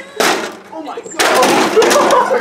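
A group of young men shouting and yelling in alarm from just past a second in, after a short burst of noise near the start. They are reacting to an object thrown high into the air coming down among them.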